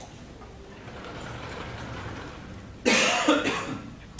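A person coughing, two loud coughs in quick succession about three seconds in, over faint room noise.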